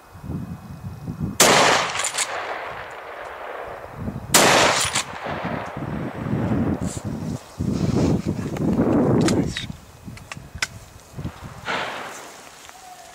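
Two close, loud rifle shots about three seconds apart, each trailing off in a long echo.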